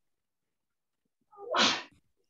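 A person sneezing once, a short sharp burst about a second and a half in, after a second of silence.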